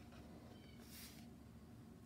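Near silence: quiet room tone, with a faint short high-pitched sound just under a second in and a soft hiss around the one-second mark.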